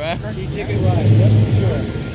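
Low, steady engine hum of a motor vehicle, with faint voices in the background.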